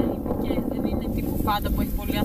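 Strong wind buffeting the microphone, a steady rough rumble, with a woman's voice briefly near the end.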